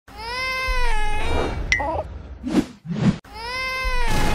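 A high-pitched, meow-like cartoon creature cry, one long call that arches in pitch, two short noisy bursts, then a second similar cry near the end.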